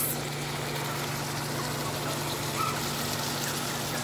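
Ground beef sizzling in a skillet, a steady hiss, over the steady low hum of a running microwave oven.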